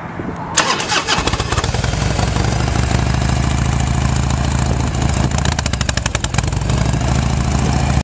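A 1994 Harley-Davidson Heritage Softail's carbureted Evolution V-twin is started. It cranks briefly on the starter about half a second in, catches about a second in, then idles steadily through small aftermarket fishtail pipes, with a short run of sharper pulses about six seconds in.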